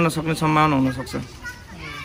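Speech: a voice talking for about the first second, then fainter background voices.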